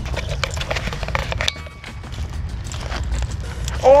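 Footsteps crunching through dry leaf litter and twigs on a forest floor, a string of short crackling steps, over a steady low rumble of wind on the microphone.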